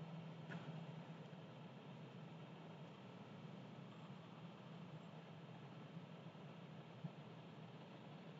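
Near silence: room tone with a faint steady low hum and a couple of faint clicks.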